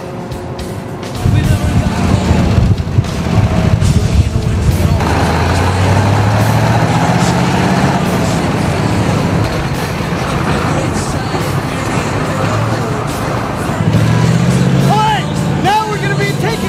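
An armoured vehicle's engine starts up loud about a second in and runs with its pitch climbing, as when revving, with music running underneath.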